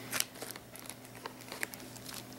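Plastic snack-size baggies of embroidery floss and their cardstock label cards crinkling faintly as fingers flip through them in a box and pull one out, with a few small ticks.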